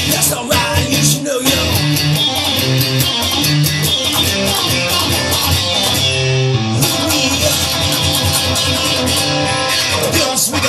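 Instrumental passage of a song: guitars over bass and a steady drum beat, with no singing.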